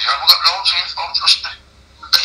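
Speech only: a voice talking, thin and tinny like a phone line.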